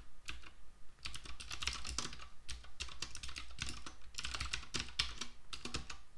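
Typing on a computer keyboard: a quick run of keystrokes about a second in, then more spaced-out key presses.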